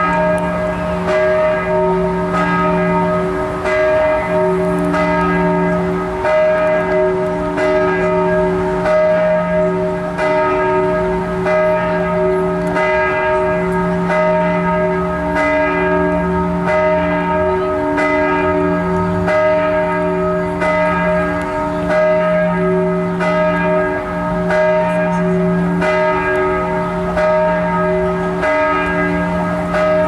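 The 1200 kg middle bell (középharang) of Budapest's Inner City Parish Church, tuned to D sharp and cast in 1927 by Ferenc Walser Jr., swinging on its elevated yoke under a linear motor and ringing steadily. Its clapper strikes about once a second, and each strike rings on into the next.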